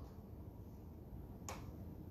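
Faint room tone with a low hum, and a single sharp click about one and a half seconds in.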